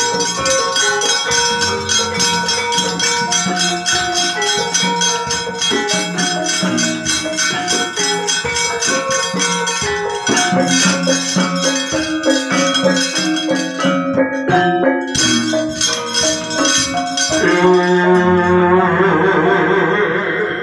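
Javanese gamelan ensemble playing: bronze metallophones strike a busy melody over a two-headed kendang drum and hanging gongs, with a dense metallic clatter on top. Near the end the high clatter drops away and a low, wavering ring carries on.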